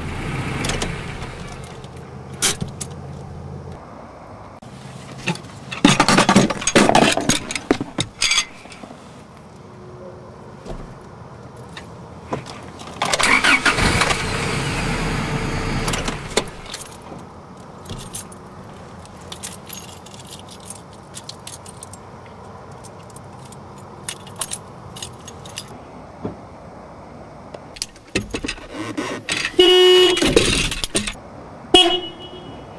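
Keys jangling and metal clicks and clatter from a steering-wheel lock bar being handled and fitted on a truck's steering wheel, with two louder noisy stretches about six and thirteen seconds in.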